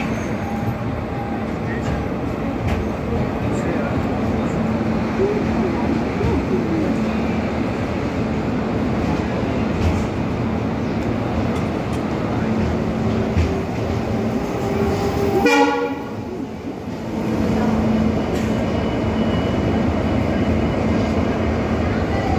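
Express passenger train arriving, rolling along a station platform and heard close beside a coach: steady running rumble of the wheels and coach. A brief horn sound comes about fifteen seconds in.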